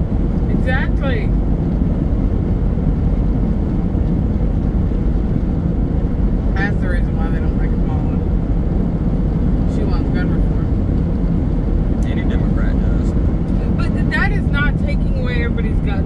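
Steady low rumble of road and engine noise inside a car driving at highway speed, with faint snatches of speech now and then.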